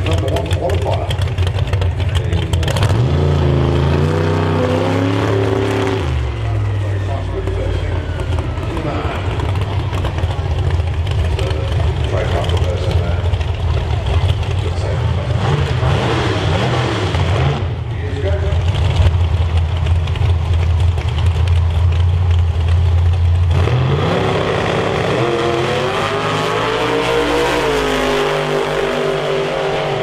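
Outlaw Anglia drag race cars' engines running loudly on the start line, revving briefly a few seconds in. About 24 seconds in both launch, the pitch climbing steeply, with a gear change and a second climb near the end.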